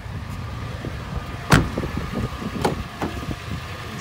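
2014 Toyota 4Runner's V6 idling, heard from inside the cabin as a steady low rumble with a faint steady whine. A sharp knock comes about a second and a half in, then a couple of lighter clicks.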